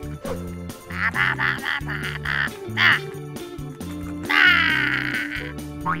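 Upbeat background music with a high-pitched, babbling cartoon-style character voice breaking in three times: gibberish 'ba-ba' chatter rather than words.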